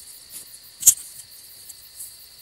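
Night ambience of crickets chirping steadily, with one sharp click a little under a second in.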